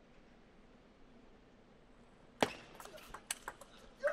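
Table tennis ball struck and bouncing in a fast rally: a sharp click of the serve about halfway through, then a rapid run of lighter ticks off bats and table, over a quiet arena hush.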